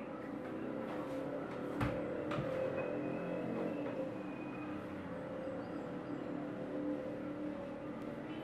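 A steady low hum, with a sharp click about two seconds in and a softer one shortly after.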